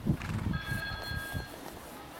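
A show-jumping arena's start signal: one steady, high tone of several pitches held for about a second, the judge's signal that the rider may begin the round. It follows a few dull hoofbeats of a horse cantering on sand.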